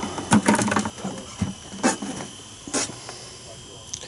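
A man's voice briefly at the start, then a few separate sharp clicks or knocks over the next two seconds, over a faint steady hum.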